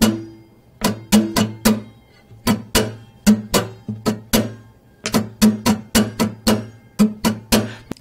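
Steel-string acoustic guitar strummed on a held chord, the strokes coming in uneven clusters with short gaps between them, some louder than others. The strumming hand keeps swinging down and up while moving in toward and away from the strings, so it only catches them on some strokes.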